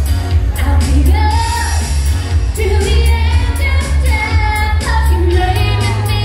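A live pop band with a female lead singer, amplified through a concert sound system. A heavy bass and kick drum run under the sung melody, with regular drum hits.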